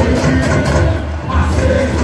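Samba-enredo parade music: a samba school's bateria drumming steadily under the sung samba theme.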